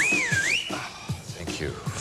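A loud, high finger whistle that rises, dips and rises again, lasting under a second, over background music with a beat.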